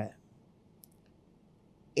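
A pause in speech: near silence, broken by two faint short clicks a little under a second in.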